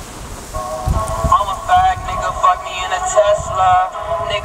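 Tinny recorded vocal music played through a tiny Bluetooth speaker hidden inside a conch shell, coming in about half a second in. Only the middle and upper pitches come through, with no bass, as from a very small speaker.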